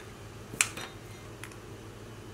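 A small glass jar of powdered pigment being opened and its lid handled: one sharp click about half a second in, then a faint tick near the middle.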